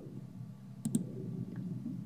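Two quick, sharp clicks close together about a second in, over a faint steady low hum, in a pause between words.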